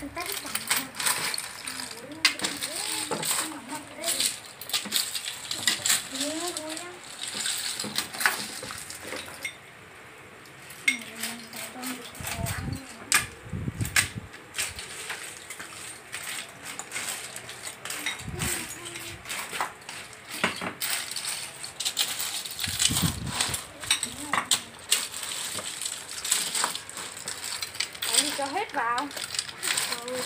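Snail shells clattering against each other and the metal pot as a metal ladle stirs them during stir-frying: a dense, continuous run of sharp shell clicks. A few dull low thumps fall around the middle.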